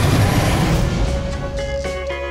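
Trailer sound design: a loud, deep rumble fades over the first second or so and gives way to music, with a held note and short pitched notes near the end.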